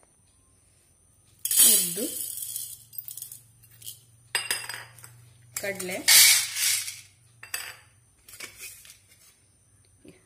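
Stainless steel plates clattering and scraping as they are set down on a counter, and dried chickpeas tipped from a small steel cup into a steel plate, rattling on the metal. The sounds come in several separate bursts.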